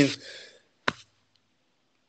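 A man's word trailing off into a breathy sigh, then a single sharp click about a second in, followed by dead silence.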